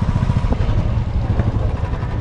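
Steady low rumble of a moving vehicle: engine and road noise.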